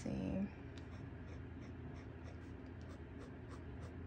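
Kakimori brass dip nib scratching on paper in a run of short, light, evenly repeated strokes as it draws ink test lines.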